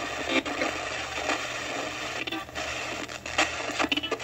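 Radio static from a spirit-box radio setup, with irregular short clicks and broken snatches of sound. Near the end, a fragment is taken by the session keeper for a spirit voice saying "Dennis read the book."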